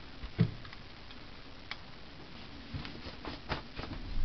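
Handling noises from a stainless steel vacuum flask and its rubber stopper: a knock about half a second in, then a few light clicks and taps, several close together near the end.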